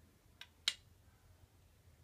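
Glass chess piece set down on a glass chessboard: a faint tap about half a second in, then a sharper clink just after.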